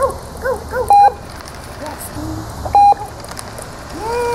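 Manners Minder remote treat dispenser beeping twice, two short steady electronic tones a little under two seconds apart.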